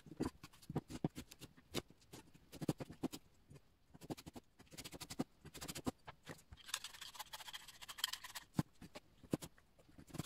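A chef's knife slicing apples on a plastic cutting board: a string of irregular sharp taps as the blade cuts through and hits the board. Just before the middle, a scraping rustle lasts about two seconds.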